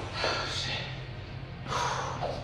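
A man breathing hard from the exertion of a set of dumbbell curls: two heavy exhales, one just after the start and one near the end.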